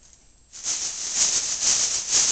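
A thin plastic shopping bag being shaken hard overhead, a loud crinkling rustle that starts suddenly about half a second in and surges with each shake.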